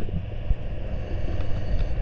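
Steady low underwater rumble heard through the camera housing, with a faint machinery hum and a few light knocks.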